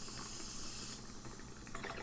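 A breath drawn in close to the microphone between spoken sentences, heard as a soft hiss that lasts about a second and then fades.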